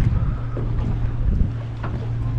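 A boat's motor running steadily at low revs, a constant low hum, with wind buffeting the microphone.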